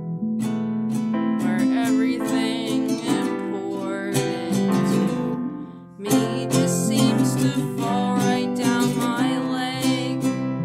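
Strummed acoustic guitar with a woman singing a punk rock song. Just before six seconds in the sound dies away for a moment, then the strumming comes back in strongly.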